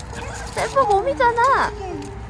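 A dog whining and yipping excitedly in a short run of high, wavering cries from about half a second in, while greeting another dog.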